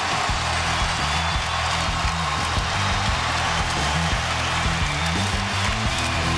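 Music played loud in a basketball arena, a bass line stepping between low notes, over the steady noise of a large crowd.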